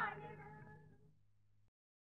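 The last sung note of a Marathi devotional song, bending in pitch and dying away with its accompaniment over about a second and a half, then cutting to dead silence at the track's end.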